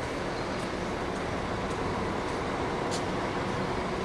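Steady hum and rumble of a bus terminal with bus engines running, and one sharp click about three seconds in.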